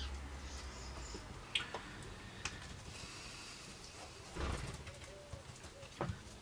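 Paintbrush dabbing and working fibreglass resin into the glass tissue, soft wet brushing with sharp clicks about one and a half and two and a half seconds in and a louder dab a little past four seconds.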